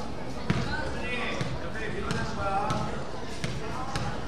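A basketball being dribbled on a gym floor: several uneven bounces, the loudest about half a second in, with voices calling out in the hall.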